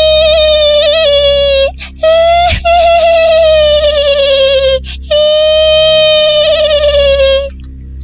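A shrill, high-pitched wailing cry, "hiiieee", voicing a langsuir, the female vampire ghost of Malay folklore, in three long drawn-out notes, each sagging a little in pitch. Beneath it runs a low, steady music drone.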